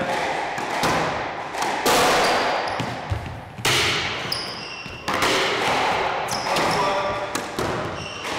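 Squash ball being volleyed with a racket against the front wall in a reverberant court: a sharp hit about every second or so, each ringing on in the hall. Short high squeaks of court shoes on the floor come between the hits.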